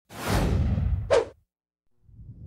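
Intro sound effect: a whoosh that sweeps downward, with a short, louder swish about a second in before it cuts off.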